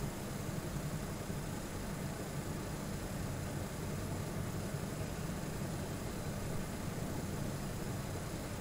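Steady low hum with an even hiss over it: background room noise picked up by the microphone, with no distinct events.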